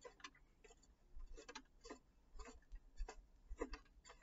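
Hands of a plastic teaching clock being turned round the dial by hand, its mechanism giving a faint, irregular run of small clicks.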